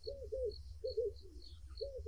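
A dove cooing: a string of short coos, several in quick pairs, with faint high chirps repeating behind them.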